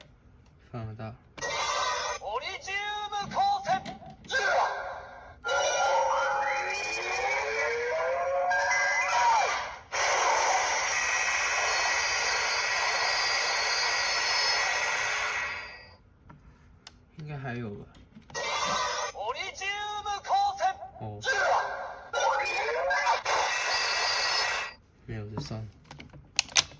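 Bandai Ultra Replica Orb Ring toy playing its electronic card-scan sequence through its built-in speaker: recorded voice calls and sound effects over music, a rising sweep, then a sustained effect lasting about five seconds. After a short gap a second, similar sequence of voice calls and effects plays.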